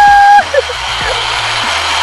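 A high held "woo" cry for the first half-second, then a steady rushing hiss as a zipline pulley runs along the steel cable at speed, with wind.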